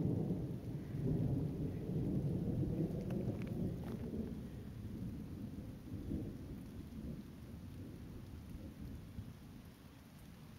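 Thunder rolling: a deep, low rumble that slowly dies away over the seconds, echoing down wooded ravines.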